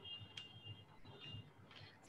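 Near silence between speakers, with a faint high steady tone twice and a single soft click about half a second in.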